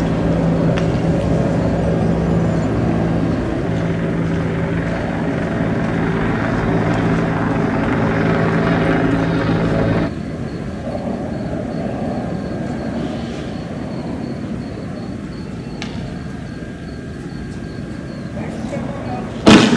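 Steady engine drone with a strong low hum. About ten seconds in it drops abruptly to a quieter, duller drone.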